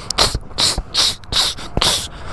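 A man's short, sharp hissing exhales, five in quick succession, the 'tss' breaths of someone throwing punches at a punching bag.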